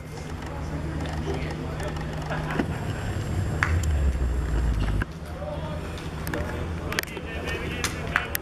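Outdoor ambience with faint, indistinct voices, a low rumble that cuts off abruptly about five seconds in, and a few sharp clicks.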